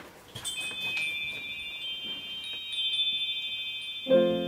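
Chimes ringing: a few high, clear tones struck about half a second and one second in, sustaining and slowly dying away.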